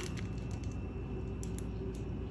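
Faint squish of mayonnaise being squeezed from a plastic bag onto a hot dog, with a few soft ticks about one and a half seconds in, over a low steady room hum.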